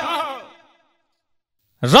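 A man's voice trailing off and fading out, then about a second of complete silence, then his voice starting again near the end.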